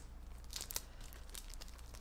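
Faint crinkling of paper being handled, with a few short rustles a little under a second in.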